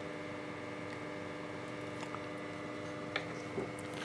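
A steady hum made of several level tones, with a few faint clicks from small electronic parts and a soldering iron being handled during hand soldering, about two seconds in and twice a little after three seconds.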